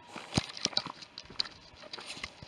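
Footsteps on a dry stony track, a quiet run of irregular light crunches and ticks.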